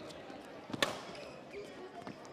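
Badminton racket striking a shuttlecock mid-rally: one sharp crack about a second in, with fainter taps and squeaks of footwork on the court after it.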